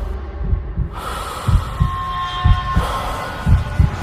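Film-trailer sound design: a low hum with a run of deep, irregular thumps like a heartbeat, and a brief high steady tone about two seconds in.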